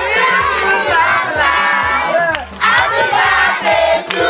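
Many voices shouting and chanting together over music with a steady bass beat of about two beats a second, with a brief drop in the voices about two and a half seconds in.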